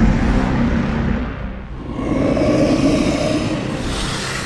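Low, rumbling growls of a giant monster lizard. One growl fades about a second and a half in, and a second one swells up right after.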